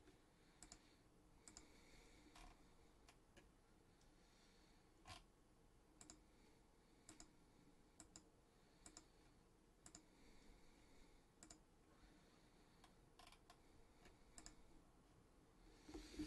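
Faint, scattered clicks of a computer mouse and keyboard, irregular, roughly one a second, in near silence.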